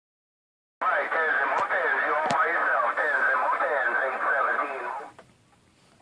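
A voice received over the Motorola CB555 CB radio and played through its speaker: thin, band-limited radio speech with a couple of faint clicks, starting just under a second in and stopping about five seconds in.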